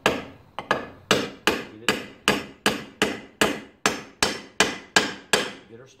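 A brass-headed hammer gives a steady run of about fourteen light taps, roughly two and a half a second, driving a ball bearing into its bore in a Stihl 028 chainsaw crankcase half. Each tap rings briefly, and the taps stop shortly before the end.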